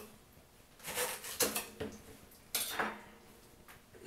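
A kitchen knife cutting into a young coconut's husk: three short bursts of scraping and knocking, about a second apart, as a piece of the top is cut away.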